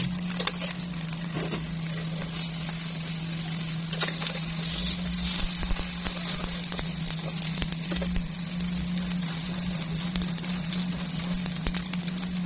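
Egg and tomato omelette sizzling in oil in a frying pan, a steady hiss throughout. Scattered light taps and scrapes of a plastic spatula against the pan, over a steady low hum.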